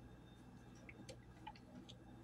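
Faint, scattered small clicks and ticks of fingers working at the cap of a plastic bottle.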